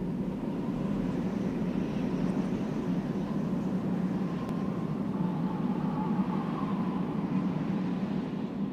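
A steady low rumble with no clear rhythm, and a faint wavering whistle-like tone above it around the middle.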